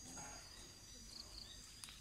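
Faint, steady high-pitched insect trilling, with a faint click near the end.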